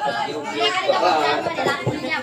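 Voices talking, several at once, with no music playing.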